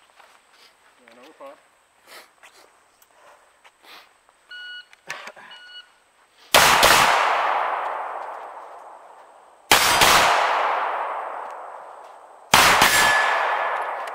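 Two short electronic beeps from a shot timer starting the run, then three loud pistol reports about three seconds apart, each dying away slowly.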